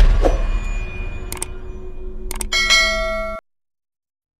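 Animated subscribe end-card sound effects: a low whooshing rumble, two sharp clicks about a second apart, then a bright ringing bell ding that cuts off suddenly.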